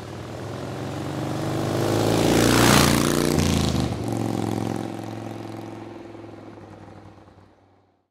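A motorcycle engine passing by. It swells up, is loudest about three seconds in, drops in pitch as it goes past, and fades away.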